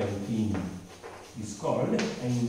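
A man speaking in a lecture, with a couple of light chalk taps on a blackboard as he writes.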